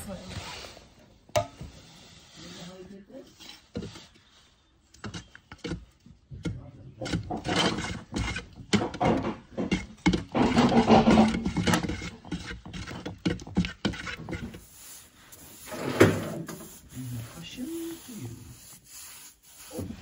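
A wooden stir stick scraping and knocking around the inside of a metal paint tin as paint is mixed, in an irregular run of scrapes and taps, with a sharp knock about three-quarters of the way through.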